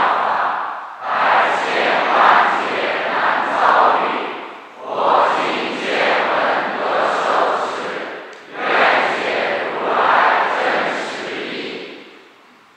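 Many voices chanting together in unison, in phrases of three to four seconds with short breaks between them.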